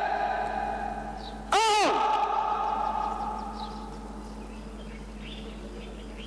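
A single drawn-out shouted drill command from a parade commander, about one and a half seconds in, echoing across the parade ground and dying away over the next two seconds. Faint bird chirps follow.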